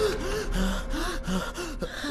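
A person's voice in several short, breathy gasps, one after another, without words.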